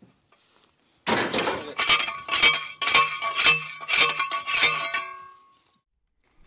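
Manual post driver pounding a steel fence T-post into the ground: a run of sharp metal-on-metal clangs, about two or three a second, each ringing. The strikes stop about five seconds in and the ring fades.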